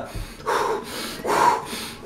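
A man breathing out heavily through the mouth, two long puffs of breath.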